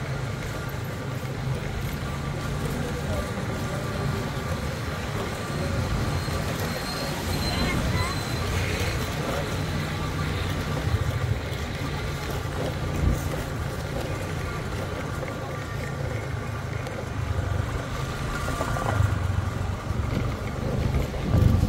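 City street ambience: a steady low rumble of road traffic with people talking among the passers-by.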